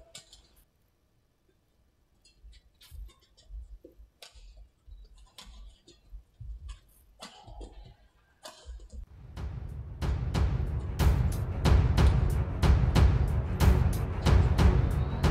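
Faint, scattered sharp clicks of rackets hitting a shuttlecock during a badminton rally. About nine seconds in, loud music with a heavy, steady drum beat comes in and drowns them out.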